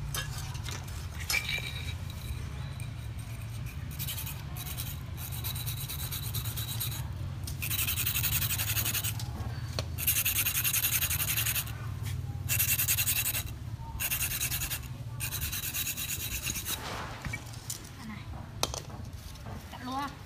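Steel knife blade being sharpened on a whetstone: a series of about seven long, rasping strokes of a second or so each, with short pauses between them.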